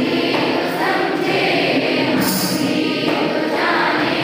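A group of schoolchildren singing a prayer song together in unison, on long held notes.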